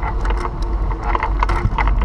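Wind rumbling steadily on a moving action camera's microphone, with an irregular clatter of light rattles and clicks throughout.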